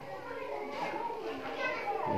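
Several children talking and calling at once in the background, their voices overlapping.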